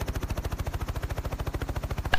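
Helicopter rotor blades chopping in a rapid, even beat, heard from inside the helicopter.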